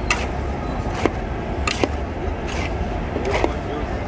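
Long metal spatulas clinking and scraping against a large metal kadai as a batch of pasta is stirred, with sharp clinks roughly once a second, over background voices and street noise.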